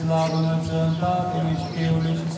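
A man's voice chanting Orthodox liturgical text on one steady reciting note, the syllables changing over the held pitch with short breaks between phrases.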